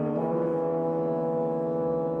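French horn holding a long low note. Just after the start it moves to a new pitch and sustains it steadily.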